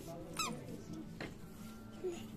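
A faint short squeak about half a second in, then a single click a little after a second, over a faint steady low hum.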